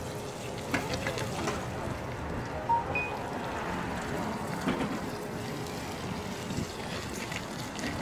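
A small forklift moving a loaded pallet of boxes across a wet lot: a steady low running noise with a few light knocks and clatters, and two brief faint beeps about three seconds in.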